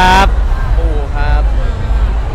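A man speaking Thai in two short bits, the polite word "khrap", over a steady low background rumble.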